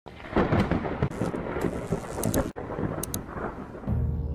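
Rumbling, hissing noise with sharp crackles that drops out for an instant about halfway through. A low steady hum comes in just before the end.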